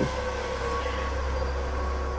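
A steady low hum with a faint held tone above it, in a pause between speech.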